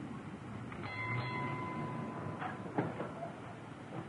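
A car engine running as the car drives up and stops, with a steady high whine for about a second and a half. A couple of sharp clicks follow as the car door is opened.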